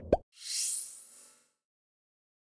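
Motion-graphics sound effects on a news end card: a short burst of quick rising pops right at the start, then a hissy whoosh that rises in pitch and fades away over about a second.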